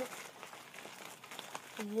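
Faint rustling and handling noise with a few light crinkles as wrapped presents in a stocking are handled; a girl's voice comes in near the end.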